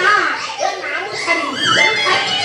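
Raised, high-pitched voices shouting excitedly, with no clear words.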